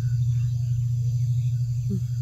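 A low, steady droning hum with a faint pulse, the bed of a film's suspense background score, with a few faint short chirps above it.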